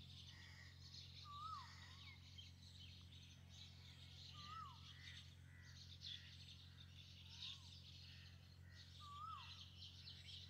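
Near silence: faint bird calls in the background, a short whistled call that rises and falls, repeated about four times over a low steady hum.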